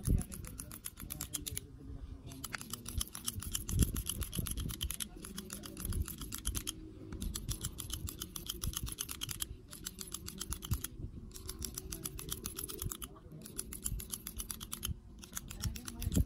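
Hand-squeezed manual hair clipper cutting short hair: quick runs of crisp metallic clicks, one per squeeze of the handles, broken by short pauses every second or two. Low thumps come in between, the loudest about four seconds in.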